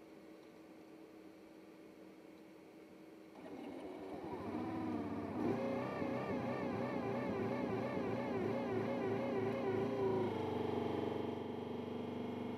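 LS3 legged robot's engine starting up in answer to a power-on command. After a few seconds of low hum it comes up to speed with its pitch wavering rapidly, then settles into a steadier drone near the end.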